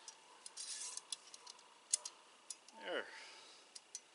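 Small metal clicks and clinks of wire snare cable and its hardware being handled as a snare is reset, irregular sharp ticks with the loudest about two seconds in.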